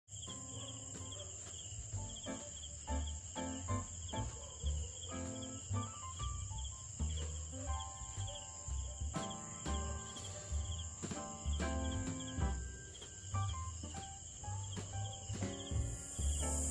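Crickets chirping in a steady high trill throughout, with instrumental music over it: separate pitched notes that start sharply and fade, over low bass notes.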